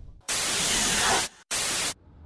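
Two bursts of hissing static, an edited-in scene-transition effect: one about a second long, then after a brief gap a shorter one of about half a second. Each starts and stops abruptly at a steady level.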